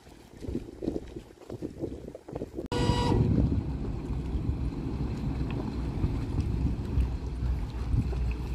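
A boat's horn gives one short blast about three seconds in. Then the rescue boat's engines run with a steady low rumble as it passes close, towing a small motorboat.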